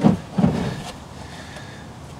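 A sharp knock, then a brief low scuffing sound about half a second in, as a person lying under a van shifts and reaches up to the oil filter.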